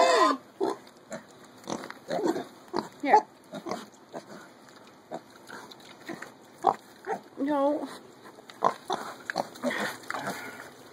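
Baby mini pigs grunting and squeaking in short, scattered calls as they crowd a bowl of blueberries, with one longer wavering squeal about seven and a half seconds in.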